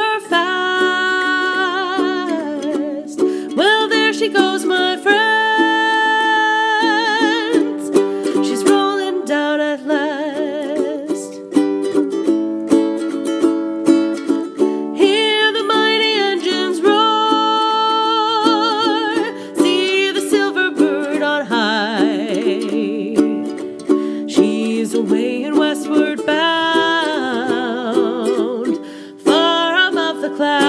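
A woman singing with vibrato to her own strummed ukulele.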